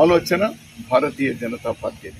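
Only speech: a man talking in short phrases.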